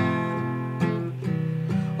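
Acoustic guitar strummed: three strokes a little under a second apart, each chord left ringing.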